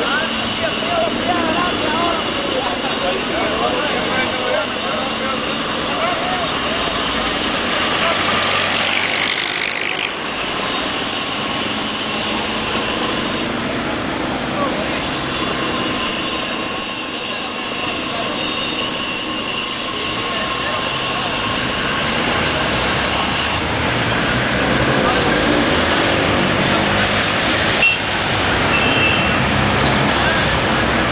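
Street traffic of classic cars and a bus driving past, engines running, with people talking nearby. A rising whine about eight seconds in, and a single sharp click near the end.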